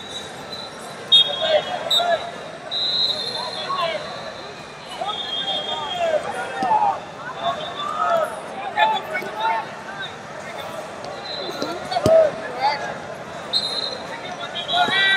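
Wrestling arena: voices shouting and calling from coaches and spectators, with repeated high-pitched squeals, and a thud about twelve seconds in as a wrestler is taken down to the mat.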